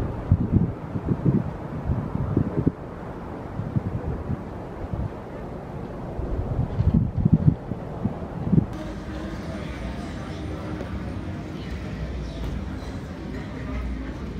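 Low, uneven rumbling and buffeting from a car ride and wind on the microphone. About nine seconds in, it cuts abruptly to the steady hubbub of a busy casino floor with indistinct crowd voices.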